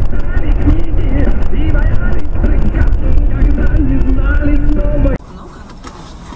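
Loud, muffled low rumble of a car driving at speed, heard from inside the cabin through a dashcam, with a person's voice over it. It cuts off suddenly about five seconds in.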